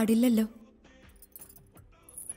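A woman's voice in the first half second, rising quickly in pitch. Then faint scattered metallic clicks and clinks over quiet background music.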